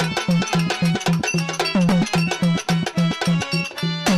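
Instrumental bhajan music: hand drums playing a quick, steady rhythm, with bass strokes that slide down in pitch, over sustained harmonium chords and the bright clinking of small hand cymbals.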